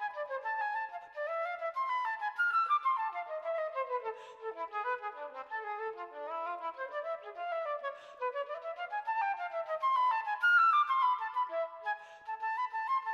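Background music led by a flute playing quick runs of notes that sweep up and down.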